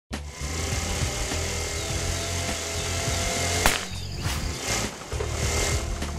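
Sound effect of a small scooter engine puttering in a fast low pulse, with background music over it. A single sharp bang comes about three and a half seconds in, after which the engine's putter runs unevenly.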